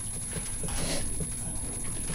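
Room background between sentences of a lecture: a low uneven rumble with faint irregular knocks, and a brief soft hiss a little under a second in.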